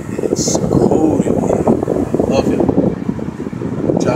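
Mercury Cougar's A/C blower on max at full fan speed, air rushing out of the dashboard vents and buffeting the microphone held close to them, a steady ragged rush.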